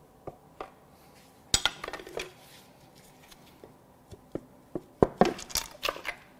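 Metal tools and a cylinder head clinking and knocking as the head is worked loose and lifted off a Cadillac Northstar aluminium V8 block. A cluster of sharp, ringing clinks comes about a second and a half in, and several more sharp knocks come near the end.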